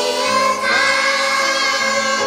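A choir of young children and women singing a Korean worship song together, holding sustained notes.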